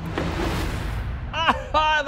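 Large 3D-printed tank's brushless motors and sprocket-and-chain reduction drives running as it moves, heard as a rushing noise that fades after about a second. About a second and a half in, a man's voice cuts in over it.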